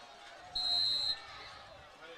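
Referee's whistle: one short, steady, high blast of about half a second.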